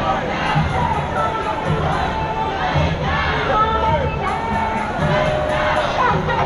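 A street crowd of demonstrators: many voices shouting and calling out at once, loud and continuous.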